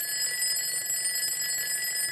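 Alarm clock ringing steadily and without a break, a bell-ring sound effect.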